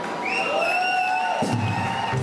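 A long drawn-out shout over the hall's PA with the crowd cheering along, typical of a carnival call led from the stage. It rises at the start and is then held level for over a second before breaking off.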